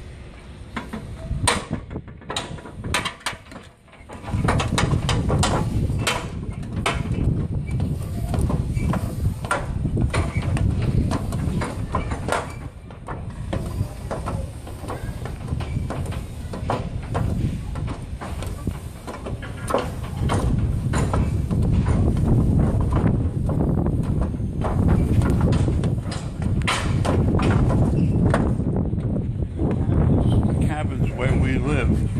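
Footsteps climbing a metal ship's gangway stairway, with irregular knocks and clanks from the treads. From about four seconds in, low wind rumble buffets the microphone.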